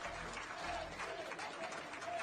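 A crowd giving a standing ovation: steady applause with voices shouting over it.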